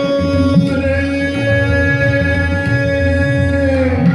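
Male Hindustani classical vocalist holding one long, steady sung note that ends just before the end. It sits over a tanpura drone and low percussive accompaniment.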